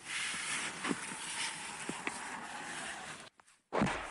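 Steady rustling noise of a handheld camera being carried, with a few faint clicks. The sound drops out briefly near the end and is followed by a short, loud thump.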